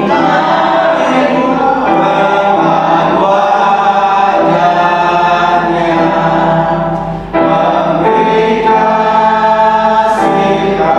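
Christian choral music: a choir singing a hymn, with a short break in the singing about seven seconds in.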